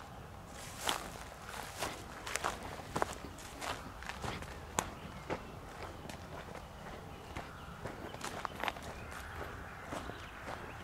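Footsteps of someone walking through rough grass and weeds, crunching and rustling at an uneven pace.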